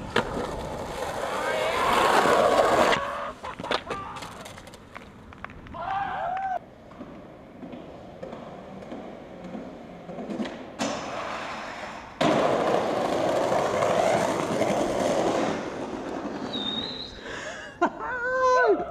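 Skateboard wheels rolling over concrete and stone paving, broken by sharp clacks of the board and landings. About two-thirds of the way through, a louder stretch of rolling starts suddenly.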